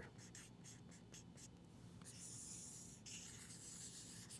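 Felt-tip marker writing on paper, faint: a few short strokes, then two longer scratchy strokes about halfway through as a wavy outline is drawn around the equation.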